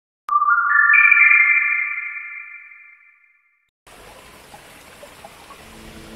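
An electronic chime rings out at once, its notes climbing in quick steps to form a bright rising chord that fades away over about three seconds. After a short silence, the steady rushing of a small waterfall cuts in abruptly near four seconds.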